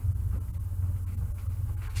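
A steady low hum or rumble in the room, with a few faint soft rustles.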